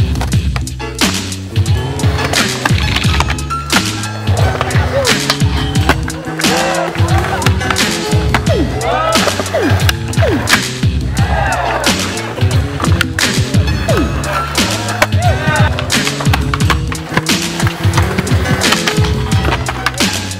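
Skateboards on a concrete skatepark: wheels rolling and many sharp knocks of boards popping and landing, mixed with music that has a repeating bass line.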